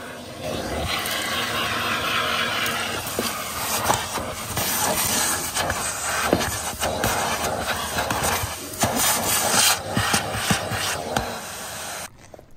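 Portable vacuum cleaner running with steady suction noise while its crevice nozzle scrapes over a car's carpet floor mat, with frequent short crackles and clicks as it works the carpet.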